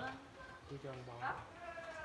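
Quiet talk from people at a dinner table, with a drawn-out voiced sound held for about half a second in the middle.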